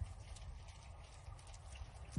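Quiet outdoor background: a low rumble with faint chirps of wild birds in the trees.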